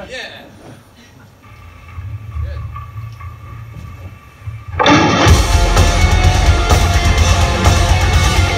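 A man laughs briefly, then a quieter stretch of low amplifier hum with a few faint held guitar tones. About five seconds in, a heavy metal band crashes into a song at full volume, with drums and distorted electric guitars.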